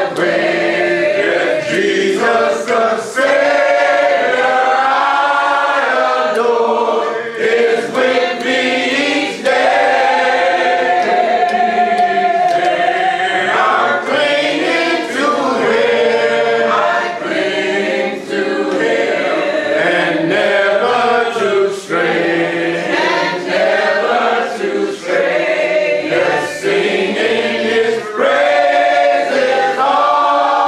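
A church congregation singing a hymn a cappella, many voices together in long sung phrases with short breaks between them and no instruments.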